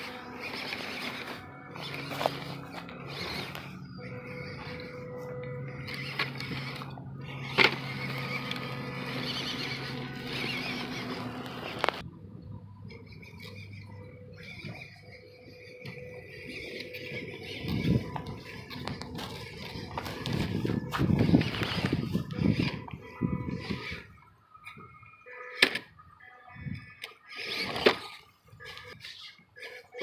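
Small electric motor of a WPL B36 RC crawler truck running in bursts, with dry grass and pine needles crackling under its tyres. Music with held notes plays through about the first half.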